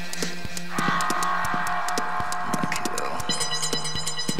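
Dark psytrance electronic music: a steady low synth drone under quick clicking percussion, with a bright sustained synth chord coming in about a second in and higher tones added near the end.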